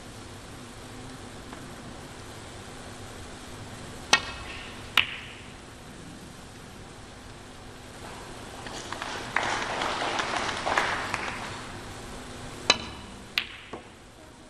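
Snooker balls clicking: two sharp clicks about a second apart, then several seconds of audience applause, then two more clicks near the end.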